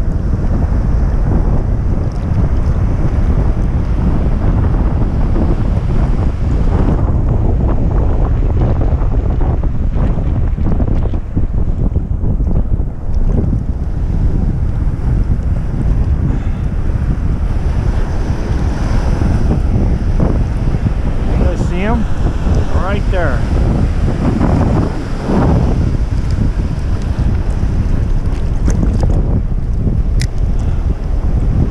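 Wind buffeting the camera microphone with a steady low rumble, over the wash of waves and surf. A few brief gliding squeaks come about two-thirds of the way in.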